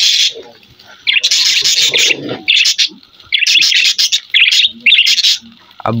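Caged budgerigars chattering in several bursts of shrill chirps, with short pauses between them.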